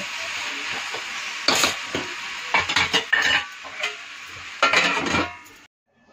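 Mixed vegetables sizzling in a kadhai as a steel spatula stirs them, with several sharp metal clinks and scrapes against the pan; the sound cuts off suddenly near the end.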